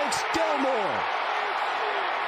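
Stadium crowd noise on a football TV broadcast, reacting to an interception being returned for a touchdown, with a commentator's excited shout falling away in the first second.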